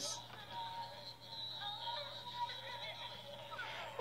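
Faint, tinny music playing from the earcup of the toy headphones that come with Hasbro's Hearing Things game, held close to the microphone.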